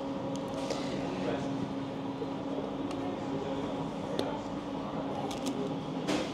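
Room tone in a diner: a steady low machine hum, with a few faint clicks and taps from the table.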